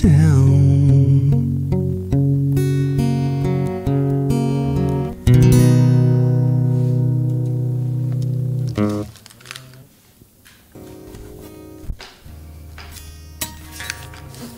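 Closing chords of a song played on a plucked string instrument, each chord struck and left ringing; the loud playing ends about nine seconds in, leaving a few faint notes.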